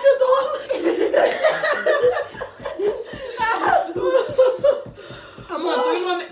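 Several women laughing and exclaiming over one another, with a long rhythmic laugh of about four pulses a second through the middle.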